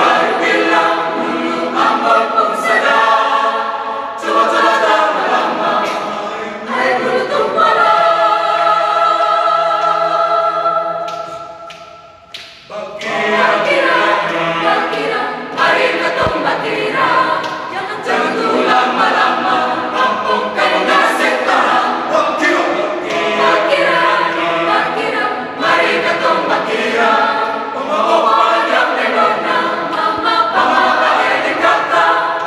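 Mixed choir of men and women singing a cappella in harmony. A long chord is held from about a quarter of the way in, fades out near the middle, and the singing starts again a moment later.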